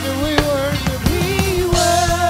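Gospel praise team singing through microphones, several voices together over a steady drum-kit beat.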